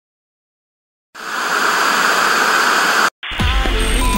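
Television static hiss, a sound effect, that starts suddenly after about a second of silence, runs for about two seconds and cuts off abruptly. It is followed by a glitchy music track with a heavy bass line starting near the end.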